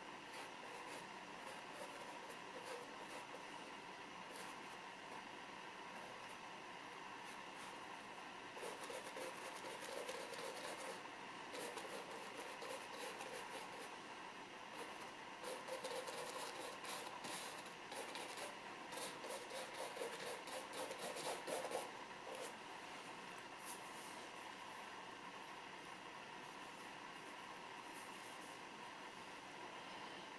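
Paintbrush stroking oil paint onto canvas: faint, scratchy brushing strokes, coming in runs from about nine seconds in until a little past twenty seconds, over a steady low hiss.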